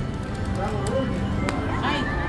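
Konami video slot machine playing its electronic spin music as the reels turn, with one sharp click about one and a half seconds in, over casino background noise.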